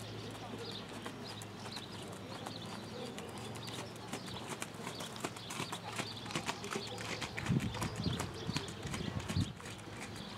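Hoofbeats of a ridden horse on sand arena footing, a run of soft thuds that grows louder as the horse comes close, loudest about seven to nine seconds in.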